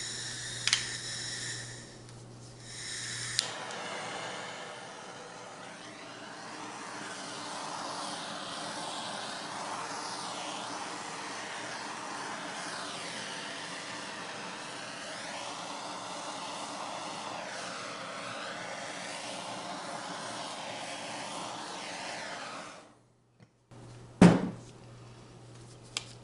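Handheld blowtorch flame hissing steadily as it is swept over wet poured acrylic paint to bring up cells. It starts with a click about three seconds in and cuts off suddenly near the end, followed by a single loud knock.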